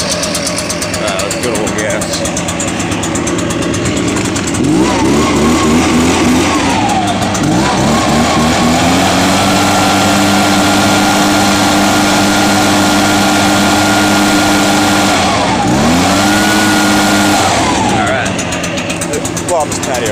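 Echo PB-580T backpack leaf blower's 58.2 cc two-stroke engine warming up just after a cold start: idling, then revved up about five seconds in and dropped back, then held steady at high revs for about six seconds. It falls back, revs once more briefly and returns to idle near the end.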